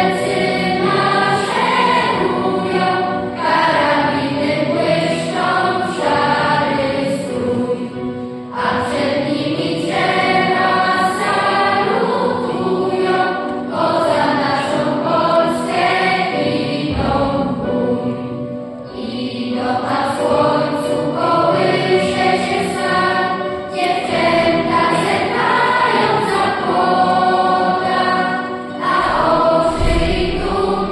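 Children's choir singing in unison phrases, with short breaks between lines, accompanied by sustained chords on an electronic keyboard.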